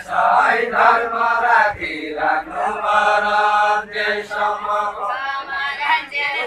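Group singing of a Deuda, the far-western Nepali folk song sung by dancers in a ring, with several voices together in long drawn-out notes.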